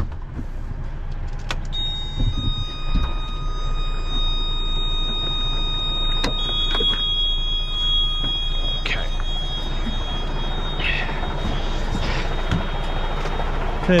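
Diesel engine of a DAF recovery truck idling steadily, with long high steady tones over it and a few sharp clicks or knocks.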